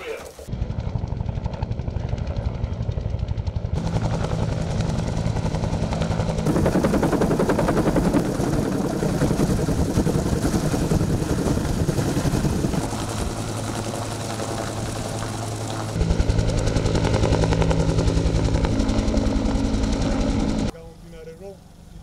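Helicopter running loudly overhead, a steady engine hum under a fast rotor beat, the sound changing abruptly several times as shots cut.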